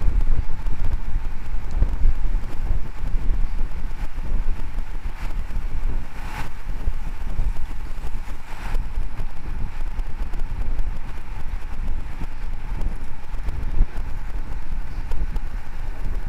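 Wind buffeting the microphone of a camera moving with a road bike at speed, over a steady low rumble of road noise. Two short, slightly louder sounds stand out about six and nine seconds in.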